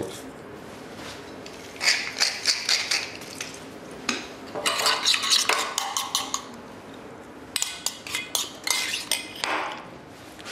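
Metal spoon clinking and scraping against a small stainless-steel saucepan as thick porridge is stirred, in three bursts of quick clinks.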